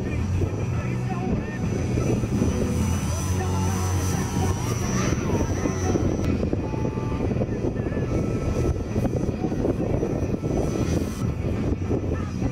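Electric RC aerobatic plane, a 46-inch Yak 55 with an Omega brushless motor turning a 13x6.5 APC propeller, flying past. Its motor and propeller give a high steady whine that bends in pitch and drops off a little past halfway as the plane passes close.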